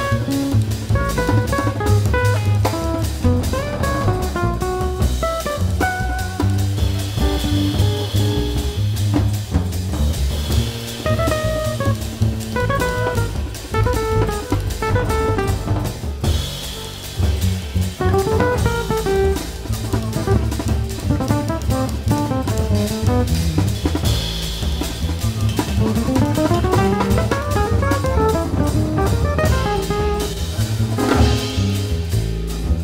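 Live jazz trio of electric guitar, double bass and drum kit playing a fast passage: quick runs of notes over a walking low bass line, with the drums keeping a busy beat and cymbal washes. Near the end, a long rising run of notes.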